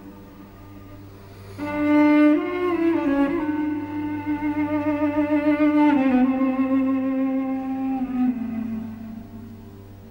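Solo cello bowing a slow melody from an old Armenian duduk song, the notes held long with vibrato. A soft held note gives way about a second and a half in to a louder entry, and the line steps downward and grows softer near the end.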